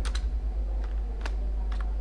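A few irregular keystrokes on a computer keyboard as a word is typed, over a steady low hum.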